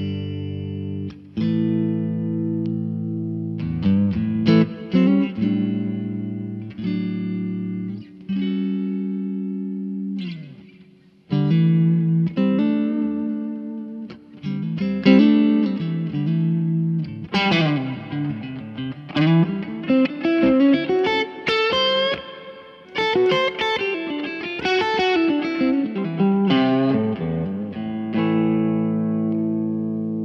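Electric guitar, a Fender Custom Shop 1967 Telecaster reissue, played amplified. Long ringing chords fill the first ten seconds, and after a brief dip a busier lead line follows with bent notes.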